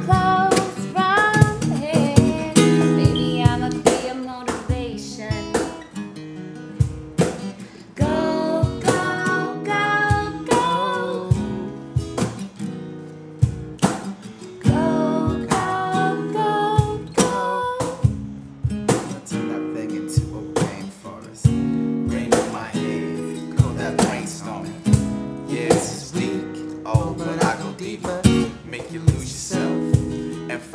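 Acoustic guitar strummed over a steady cajon beat, with wordless vocal runs drifting over the top in places: an instrumental stretch of an acoustic R&B cover.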